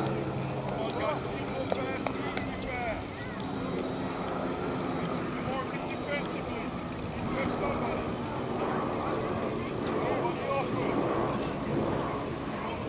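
Outdoor soccer-match ambience: distant shouts and calls from players on the pitch over a steady low hum and background noise.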